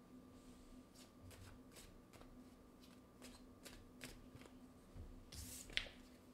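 A deck of oracle cards handled and shuffled by hand: faint, irregular clicks of card against card, with a louder swish of the cards near the end.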